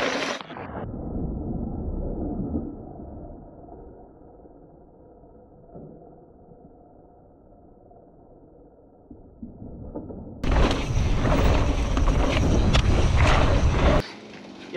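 Mountain bike tyres rolling over a dirt and rock trail. For the first ten seconds the sound is muffled and low, louder at first and then fading. About ten seconds in it cuts suddenly to a loud, close rush of tyre and wind noise with scattered clicks and rattles.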